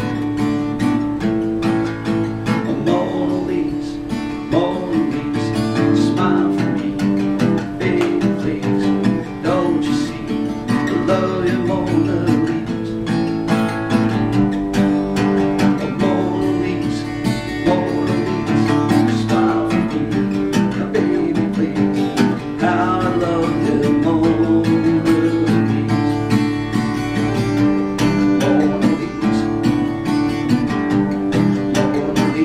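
Acoustic guitar playing an instrumental passage of a song: steady strummed chords with a melody line of bending notes above them.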